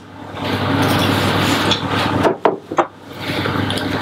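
Almond flour poured from a pink ceramic bowl into a stainless steel mixing bowl: a steady rustling hiss, broken by a few sharp knocks a little past two seconds in, then more pouring.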